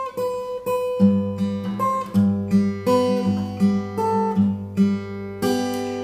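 Takamine acoustic guitar fingerpicked: a steady run of plucked melody notes, with low bass notes joining in about a second in.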